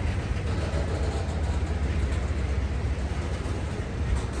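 Freight cars rolling slowly past on the rails, a steady low rumble of steel wheels and trucks.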